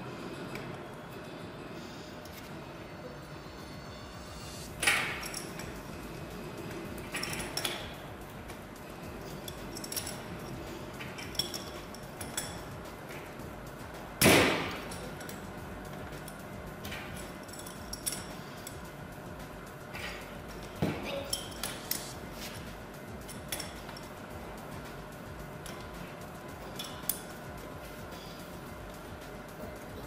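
Scattered metallic clinks and knocks of pipe fittings and hand tools being handled while a circulating pump's pipe unions are fitted. The loudest knock comes about fourteen seconds in.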